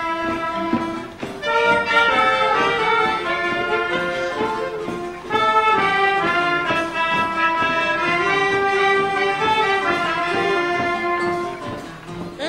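Instrumental band music: a melody played in held, brass-like notes over an accompaniment, with a brief dip about a second in.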